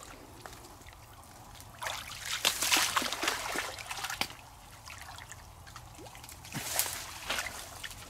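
Muddy canal water sloshing and trickling around a man wading chest-deep and groping along the bottom by hand, with two louder spells of splashing, about two seconds in and again near the end.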